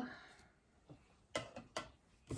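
A few light, sharp clicks of a metal spoon against a metal mini muffin tin while cheesecake filling is spooned into the cups, three taps close together past the middle, otherwise quiet.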